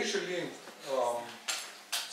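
A man's voice speaks briefly, then two sharp clicks about half a second apart near the end.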